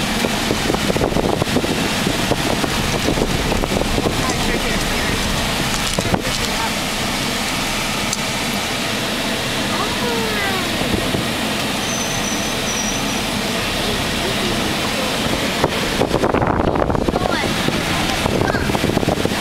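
Steady road and wind noise inside a moving car's cabin, driving on a rough rural road.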